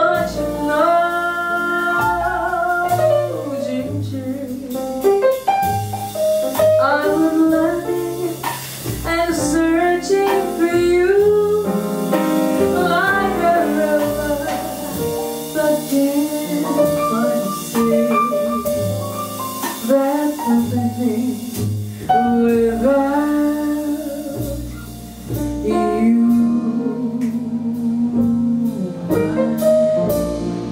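Live jazz: a woman singing a slow, held melody line into a microphone, accompanied by a small band of piano, bass and drums.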